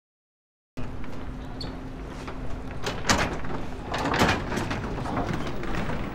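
The audio drops out, then cuts back in abruptly a little under a second in, typical of a buffering livestream. Outdoor background noise follows, with two short, louder rushes of noise about three and four seconds in.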